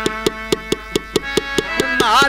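Jatra band music: steady held notes on an accompanying instrument over even drum strokes, about four or five a second.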